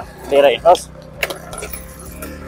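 A motorcycle idles at a standstill with a low steady hum. About a second in there is a short metallic jingle of a few quick clicks.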